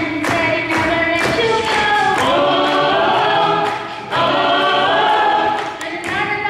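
Gospel vocal group singing a cappella in close harmony, with sharp rhythmic beats about two a second for the first couple of seconds, then two long held chords with a short break between them.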